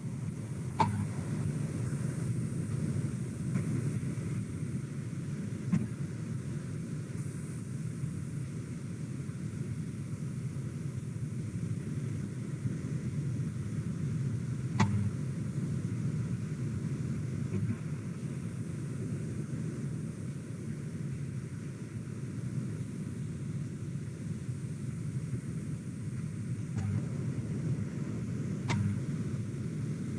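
Steady low rumbling background noise with no speech, broken by a few faint short clicks.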